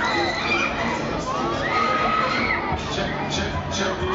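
Riders on a Mondial Shake R4 fairground thrill ride screaming and shouting as the gondolas swing and spin, many high cries rising and falling over the steady noise of the running ride.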